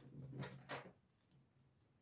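Faint crackle of vinyl electrical tape being pulled off the roll and wrapped around a sleeved speaker cable, two short pulls within the first second.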